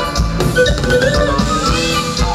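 Live band playing an instrumental passage, with drum kit, bass and melodic lines, heard over the concert sound system from the crowd.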